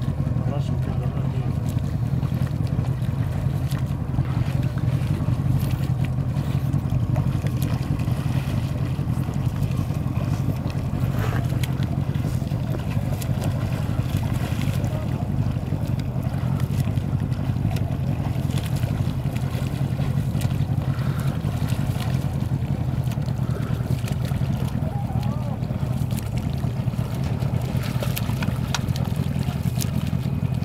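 Boat engine running steadily at low speed, a constant low hum.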